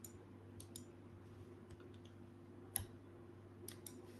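A few faint, sharp clicks, the loudest nearly three seconds in, over a low steady hum.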